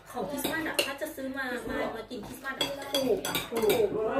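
Plates and cutlery clinking and clattering in short, repeated knocks, with a voice talking over them.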